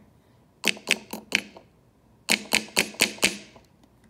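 Fingers knocking on a miniature toy elf door: four quick knocks about half a second in, then after a pause five more.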